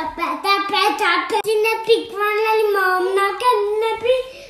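A young boy singing in a high voice, in phrases with long held notes and short breaks between them.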